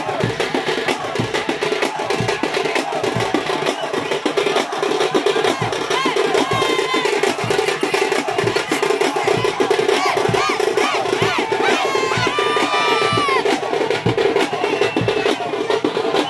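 Fast, dense festival drumming with a steady held tone beneath it, played for dancing. Shouts and whoops from the dancing crowd rise over it between about six and thirteen seconds in.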